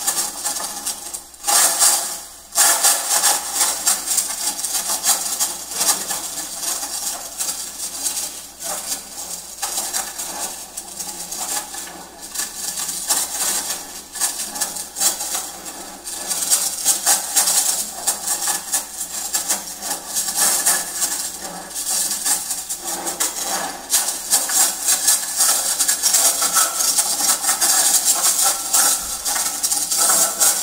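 Continuous dense clattering and scraping of small objects handled on a tabletop, with faint steady tones underneath.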